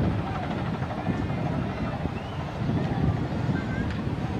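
Wind rumbling and buffeting on the microphone, with a few faint distant voices or calls above it.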